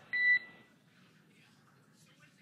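A single short electronic beep about a tenth of a second in, with a high tone and a higher overtone, as a radio communications loop gives between transmissions. It is followed by faint hiss.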